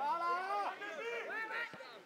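Several voices calling and shouting out at once, with no clear words.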